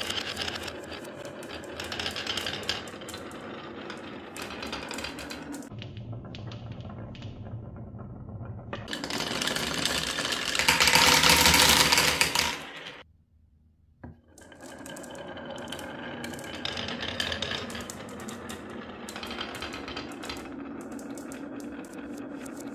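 Many marbles rolling and clicking together along carved wooden wave tracks, a steady rolling rattle. About ten seconds in it swells to a louder clatter as marbles run down wooden zigzag ramps and drop into cups. It stops briefly about thirteen seconds in, then the rolling starts again.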